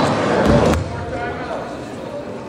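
Voices echoing in a gymnasium, with a basketball bouncing on the hardwood court. A loud, short burst of noise comes about half a second in.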